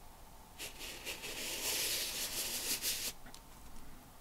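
A pen tip scratching on paper as it is drawn round in the hole of a plastic circle-drawing stencil. The soft, high-pitched scratching starts just over half a second in and stops about three seconds in.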